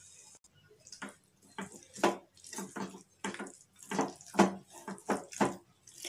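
A spoon stirring thick, wet ground chutney in an aluminium pan: a run of short, wet scraping strokes, about two a second, starting about a second in.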